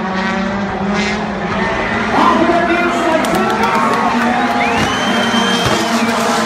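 Turbocharged rallycross supercar engines running on the circuit, their pitch rising and falling as the drivers rev and shift, with a higher whine rising near the end.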